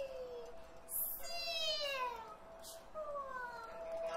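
Kun opera soprano singing a line in high, sliding notes, each syllable gliding downward in pitch, over a steady held instrumental tone.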